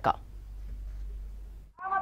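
Faint background noise with a steady low hum between spoken passages. It cuts out abruptly near the end at an edit.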